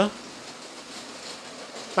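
LEGO City express passenger train (set 60337) fitted with Jacobs bogies, running on plastic track: a steady, even whirr of its motor and wheels rolling, with no distinct clicks.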